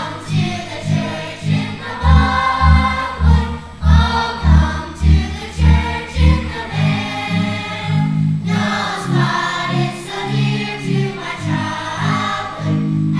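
Children's choir singing a song in a stage musical over an instrumental accompaniment, its bass line sounding in short repeated notes about twice a second for the first half.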